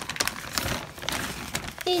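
Plastic packaging bags rustling and crinkling as they are handled, with a few sharp crackles.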